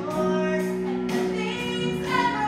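A woman singing long held notes in a stage musical number, with instrumental accompaniment.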